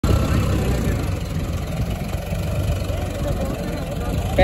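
VST Zetor 5011 tractor's diesel engine running steadily under load while pulling a disc harrow through dry field soil.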